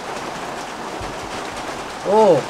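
Steady hiss of falling rain, with a brief low thud about a second in.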